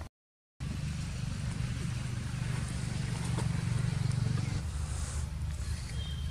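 A brief dropout to silence, then the low, steady drone of a vehicle engine that swells to its loudest about four seconds in and then fades a little.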